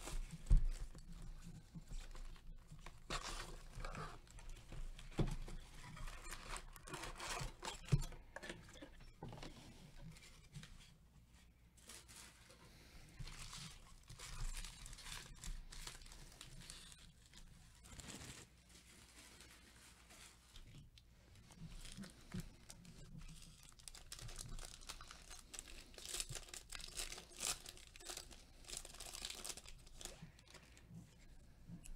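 Trading-card packs being handled and a foil pack wrapper crinkling and tearing open by hand, with a few light knocks as the box and packs are moved. The rustling comes in irregular spells and is busiest near the end.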